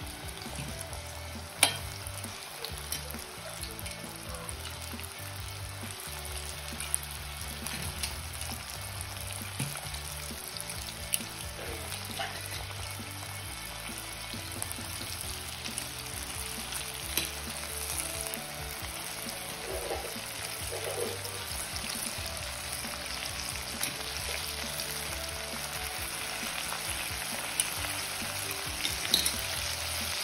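Breaded chicken fillets deep-frying in oil in a stainless steel pot over low-medium heat: a steady sizzle dotted with sharp pops and crackles, the loudest about a second and a half in. Around the middle, tongs stir and turn the pieces in the oil.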